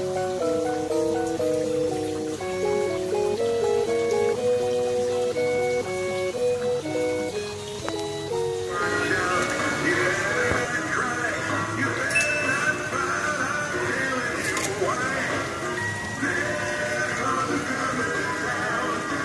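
A Christmas display's electronic music-box tune: a simple melody of short, even notes. About nine seconds in it switches abruptly to busier Christmas music with a wavering, voice-like singing line, from the animatronic cycling Santa figure.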